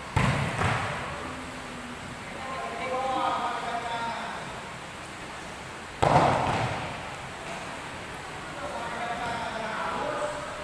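Volleyball spiked hard twice, about six seconds apart: each a sharp slap of hand on ball that echoes in the hall.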